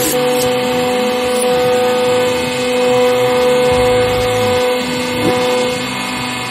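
Hydraulic press's pump running with a steady, even-pitched drone that eases off a little near the end.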